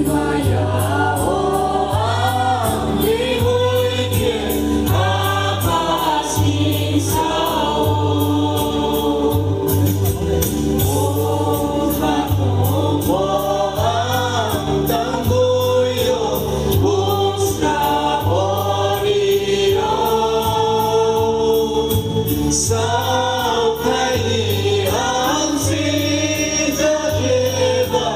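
A Baptist church choir of men and women singing a gospel hymn together, over a steady low backing beat with light percussion.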